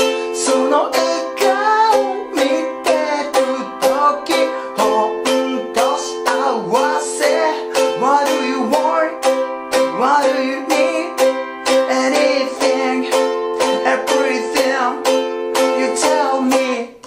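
Ukulele strummed in a steady even rhythm through C and F chords, with a man singing the melody along with it.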